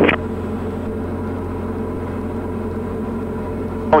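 Diamond DA40's four-cylinder piston engine and propeller at full takeoff power during the takeoff roll, a steady, even drone heard inside the cockpit.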